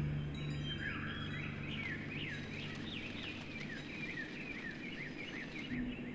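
A songbird chirping in a quick run of short rising and falling notes over a steady background hiss, while a low ringing note fades out in the first second or two.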